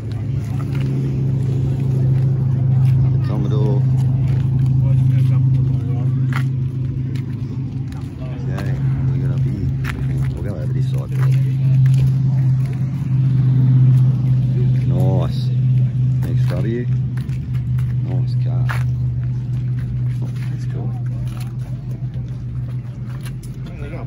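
A vehicle engine running steadily at idle, a constant low hum, with people talking in the background.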